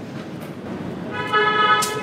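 A vehicle horn sounds one steady note for about a second in the second half, over a steady background of street noise.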